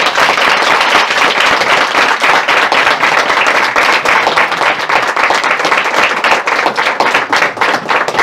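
Audience applause: many people clapping together at a steady, loud level.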